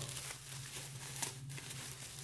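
Plastic bubble wrap crinkling and rustling as hands work it loose from a wrapped mug, with a few faint clicks about a second in.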